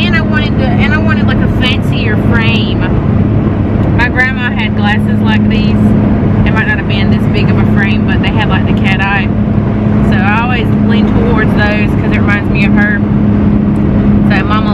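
Steady engine and road drone inside the cab of a moving pickup truck, a low even hum under a woman's talking.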